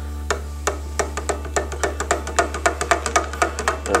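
A spoon stirring hot water in an emptied steel malt extract tin, knocking against the metal wall in a quick, irregular run of ringing clicks that speeds up. A steady low hum runs underneath.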